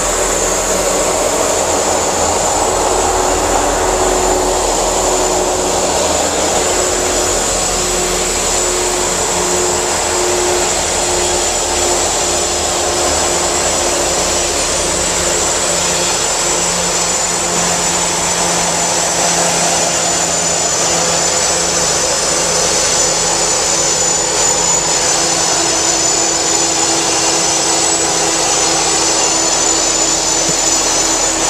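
Two Norfolk Southern SD40-E diesel-electric locomotives, with EMD 16-cylinder two-stroke engines, working as they approach and pass at the head of a loaded coal train. It is a steady engine drone with a high-pitched whine over it.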